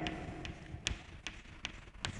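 Chalk tapping on a chalkboard as figures are written: a string of sharp clicks, about two or three a second.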